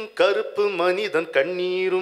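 A man singing unaccompanied into a microphone, holding long notes that waver slightly in pitch, with a short break just after the start.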